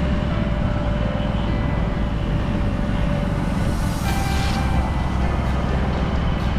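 Steady low road rumble of travelling along a road in a moving vehicle, with faint background music. A brief rushing hiss comes about four seconds in.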